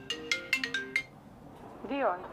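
Mobile phone ringing: a quick run of short, high chiming notes in the first second, then a short voice near the end.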